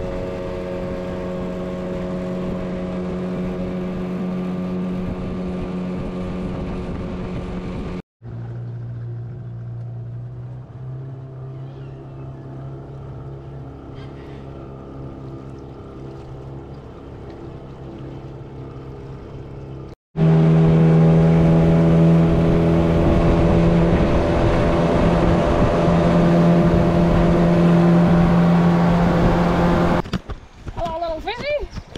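Small outboard motor on an aluminium boat running steadily at speed. The sound cuts off suddenly about 8 seconds in to the same motor running slower, lower and quieter. Another cut about 20 seconds in brings it back loud and higher-pitched at speed.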